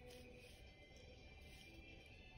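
Very faint background music with held tones, close to silence.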